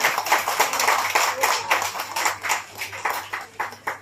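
Applause from a group of people, many quick irregular hand claps that thin out and fade toward the end.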